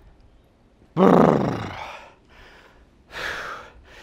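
A man's strained vocal grunt on the last hard rep of an explosive resistance-band chest press, starting sharply about a second in and falling in pitch, then a forceful breathy exhale near the end as he recovers from the set.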